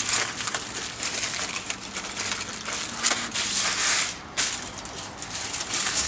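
Aluminium foil crinkling and crackling as hands fold and press it around a rainbow trout, with a brief lull about four seconds in.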